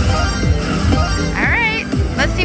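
Slot machine's free-games bonus music with a low beat about twice a second. Near the end, warbling sound effects rise and fall in pitch as fireball symbols land on the reels.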